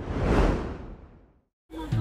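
A whoosh transition sound effect: a swell of noise that rises, peaks about half a second in, and fades out within about a second and a half. There is a brief silence, then music starts near the end.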